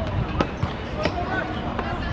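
A football being kicked and played on artificial turf: a few sharp thuds, the loudest about half a second in. Players' shouts and calls sound around them.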